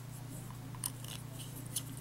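Light clicks and ticks of a Lamy Nexx fountain pen being fitted together, its plastic grip section joined to the aluminium barrel, with two sharper clicks about a second apart. A faint low hum runs underneath.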